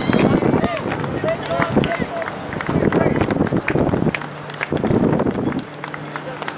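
Voices talking and calling out, too unclear to make out words, with a few short sharp clicks among them.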